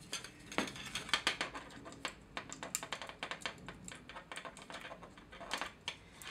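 Many small irregular clicks and crackles of plastic as pliers grip and wriggle a partly cut plastic wagon bolster to work it free.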